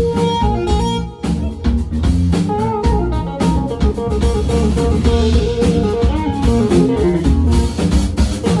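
Live jazz-funk band playing, with electric bass and drum kit under a busy melodic lead line. A long held note stops just after the start, and a brief drop about a second in gives way to the moving lead line.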